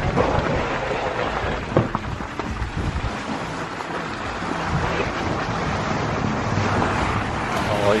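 Tesla Model 3's tyres churning through wet slush and snow, a steady rush of slushing heard from inside the car as it slips and slides on the driveway.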